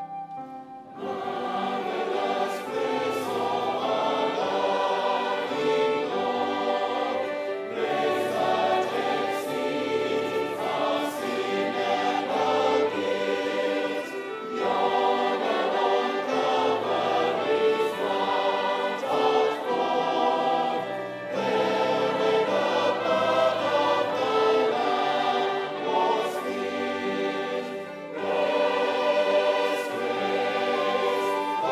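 Large choir singing a hymn in full voice with keyboard and instrumental accompaniment. The music comes in about a second in and dips briefly between phrases, roughly every seven seconds.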